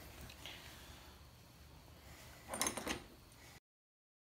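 Hands handling a carbon-fibre quadcopter frame as the top plate is fitted: a short cluster of light clicks and rattles about two and a half seconds in, after faint room tone.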